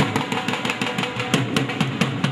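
Music with fast, busy drumming over a low melody.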